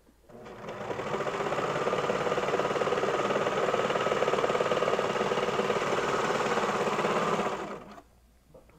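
Baby Lock Celebrate serger running at a steady speed, stitching a knit waistband seam. It builds up over the first second, holds a fast, even stitching rhythm, and stops just before the end.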